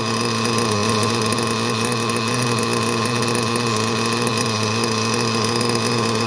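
LRP ZR.32X nitro engine idling steadily through its tuned pipe on its first run with a new carburettor, which is still at its untouched factory settings.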